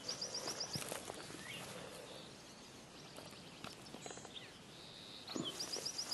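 Faint rustling of footsteps in grass, with a short quick run of high chirps right at the start and again near the end.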